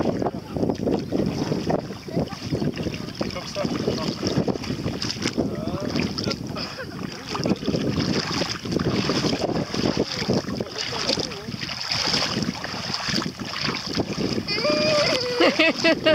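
Feet wading through shallow water, with sloshing and splashing, mixed with wind rumbling on the microphone. A high voice speaks near the end.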